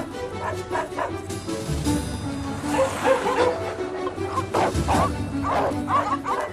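Several street dogs barking and yipping in short bursts at a lone dog, over background music; the barking is densest in the second half.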